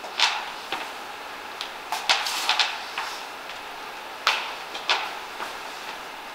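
Scattered short knocks and light thuds of feet stepping back into lunges on a gym floor and wooden lifting platform, over a steady room hiss.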